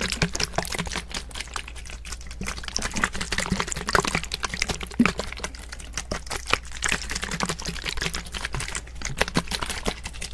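Plastic spray bottle of water handled close to a microphone: a rapid, irregular run of clicks and taps with liquid sloshing inside.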